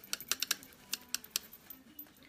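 A quick run of about ten light, sharp clicks and taps over a second and a half from makeup tools being handled at an eyeshadow palette, as a crease brush is cleaned off.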